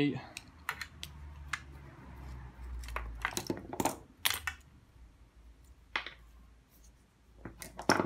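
Small metal and plastic parts clicking and clinking as wires with metal spade connectors and plastic electric-shower components are handled and set down on a bench, in a scatter of separate sharp clicks.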